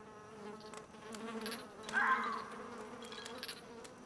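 Steady low buzzing of flying insects in a woodland ambience, with a brief louder sound about halfway through.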